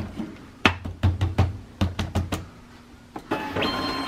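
A run of light knocks as a thick book is set and shifted into the open jaws of a Fastback 20 tape binding machine, then, near the end, a steady whine from the binder as it takes hold of the book.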